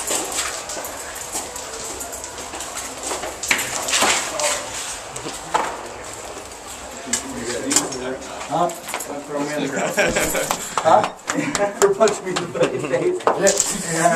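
Indistinct voices of several people talking, mixed with scattered knocks, clatter and handling noise, the voices growing busier in the second half.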